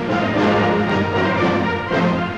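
Orchestral music with brass playing held chords.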